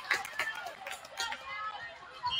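Indistinct voices of players and spectators calling out and chatting in a gymnasium, with a few short sharp clicks.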